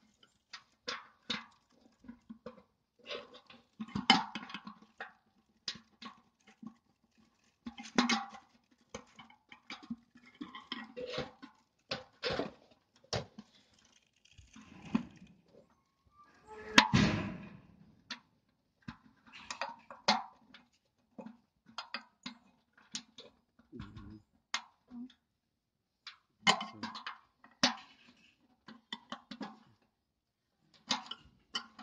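Metal clinks, taps and knocks of bolts, nuts and a steel mounting bracket being handled and fitted on the back of a satellite dish: a scattered run of short sharp clicks, with a longer, louder clatter about halfway through.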